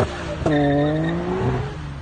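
Nissan Skyline R33 accelerating away hard after a launch. Its engine note cuts out briefly, comes back about half a second in, then fades as the car pulls away.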